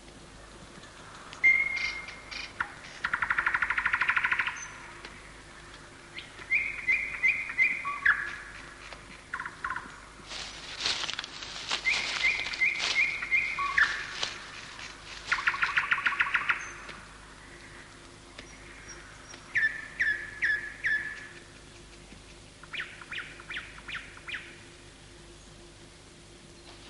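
Birds calling in jungle: repeated phrases of a few quick whistled notes that step down in pitch, alternating with fast buzzy trills. A burst of crackling noise comes about ten to twelve seconds in.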